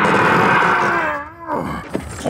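Mutant wolf creature's film vocal: a loud, rough cry for about a second that breaks into a wavering, falling pitched tone and then dies away.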